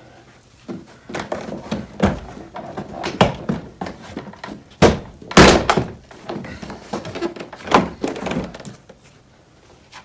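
Plastic trim clips popping loose and the door card knocking as a Mini R53's interior door panel is pried off the door: a string of irregular sharp clicks and thunks, the loudest cluster about halfway through.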